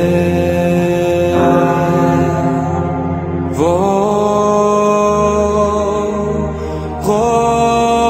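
Slow sacred chant: long held notes over a steady low drone, the melody sliding up to a new note about three and a half seconds in and stepping up again near the end.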